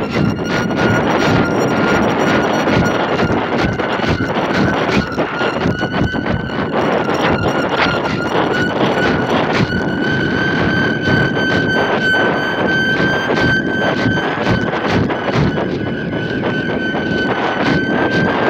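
Wind rushing and crackling over a microphone carried aloft, with a steady high whistle that slowly rises in pitch.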